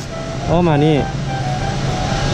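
A steady low hum of an idling motorcycle engine, with a man speaking briefly near the start.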